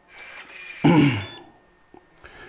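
Faint whirring of the Intelbras IFR7000+ smart lock's motor as it throws the bolt to lock. About a second in comes a short, low vocal sound falling in pitch.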